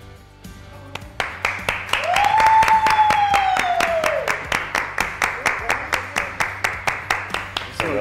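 A small group clapping in a steady rhythm, about five claps a second, starting about a second in, with excited cheering and one long high scream of joy lasting about two seconds.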